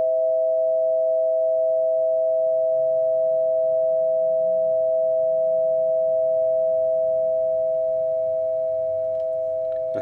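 Two metal tone tubes of a Pythagorean tone generator ringing together as a pure, steady two-note chord, easing off slightly near the end.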